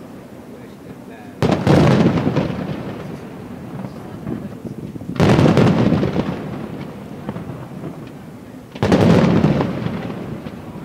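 Fireworks display: three loud aerial shell bursts, about a second and a half in, about five seconds in and near the end. Each is a sudden boom that dies away over a second or two, with quieter rumble between them.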